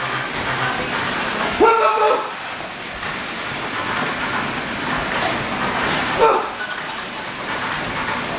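Gym ambience: background music under a steady noise bed, with short vocal exclamations about two seconds in and again briefly around five and six seconds.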